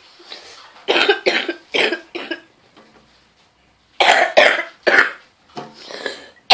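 A boy coughing hard in two fits of short, sharp coughs, a few about a second in and a louder run about four seconds in.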